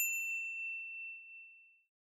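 A single bright bell-like ding, an edited-in chime sound effect, that strikes once and rings out, fading away over about a second and a half.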